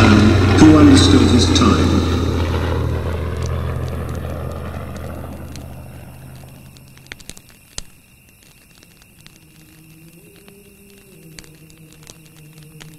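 A voice speaking briefly over a low steady drone. The drone fades away over about seven seconds, leaving a much quieter stretch with a few faint clicks and soft held tones near the end.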